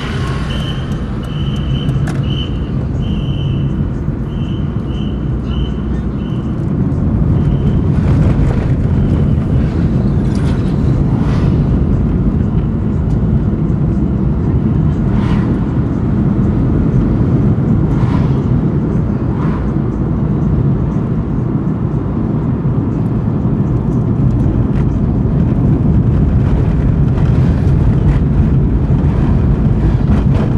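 Steady low engine rumble of slow-moving road traffic, getting a little louder after about seven seconds. For the first several seconds a high chirp repeats about once a second over it.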